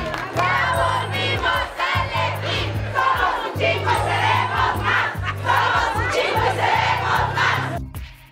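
A large crowd shouting and cheering, many voices at once, over a steady low tone; it cuts off abruptly just before the end.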